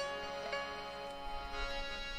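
Instrumental accompaniment between spoken and sung lines: a melody instrument plays a few slow notes, each starting sharply and ringing on, with no voice.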